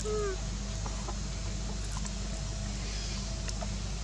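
Steady outdoor background hiss and low hum, with one short, falling animal call right at the start and a few faint clicks.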